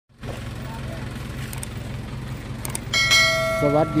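A bell-like chime sounds suddenly about three seconds in and rings on, over a steady low background hum; it is a notification-bell sound effect accompanying a subscribe-button animation. Two faint clicks come just before it.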